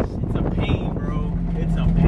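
K20/K24 four-cylinder engine of a swapped Acura Integra running at low revs, a steady drone heard from inside the cabin; a steady hum settles in about a second in.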